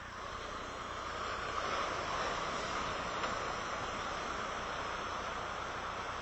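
Steady rushing noise of ocean surf, swelling a little about a second in and then holding.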